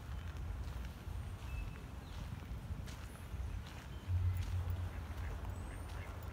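Low rumble of wind and handling on a handheld phone's microphone, swelling about four seconds in, with a few light clicks.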